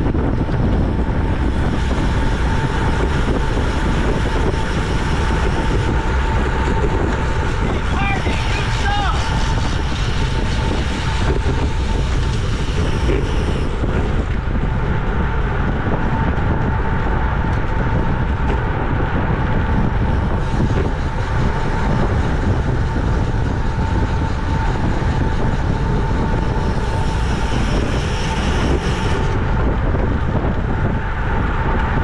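Wind rushing over the microphone of a camera on a road bike moving at about 20 mph in a pack, mixed with tyre and road noise. A faint steady tone runs through it, and a brief wavering whistle-like sound comes about eight seconds in.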